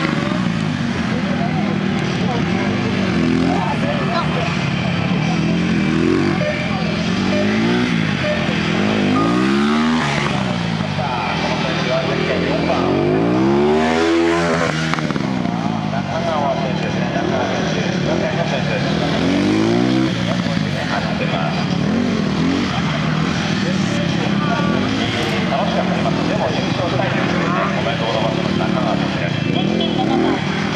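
Honda CBR600RR inline-four engine revving up and falling back again and again through tight turns, its pitch swinging up and down every few seconds.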